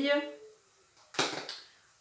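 Plastic dishware set down on a table: two sharp knocks about a third of a second apart, the first the louder.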